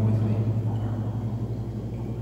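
Steady low electric hum of the pond's running pump equipment, heard underwater.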